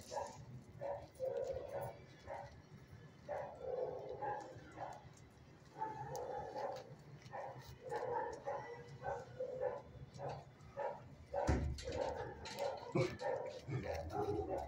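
Dogs in a shelter kennel barking in many short, repeated bursts, with a louder thump about eleven and a half seconds in.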